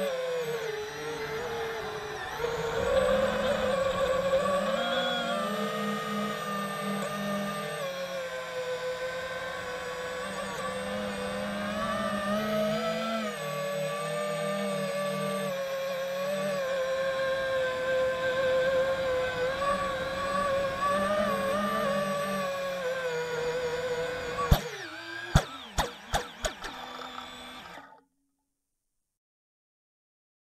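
FPV quadcopter motors and propellers whining, the pitch rising and falling with the throttle during acro flying. Near the end come a few sharp knocks, and then the whine dies away.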